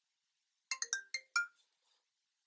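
Mobile phone ringtone: a quick melodic phrase of about five short notes about a third of the way in, signalling an incoming call.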